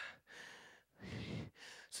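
A man's breath close to a handheld microphone as he catches his breath between lines: a few faint breaths, the clearest about a second in.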